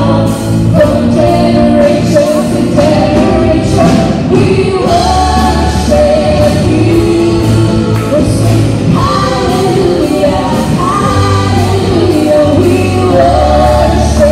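Live worship band playing a contemporary gospel song: a woman singing the lead melody over electric guitar, keyboard and acoustic guitar, with a steady beat.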